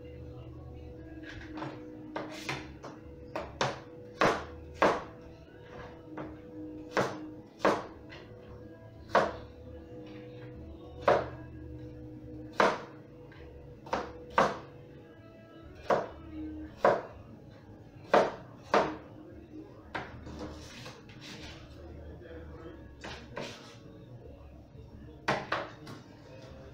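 Knife chopping apple on a plastic cutting board: sharp, separate knocks at irregular intervals, about one or two a second.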